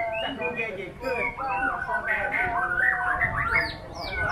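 White-rumped shama singing a fast, continuous run of varied whistled phrases and glides, ending in a series of quick down-sweeping notes.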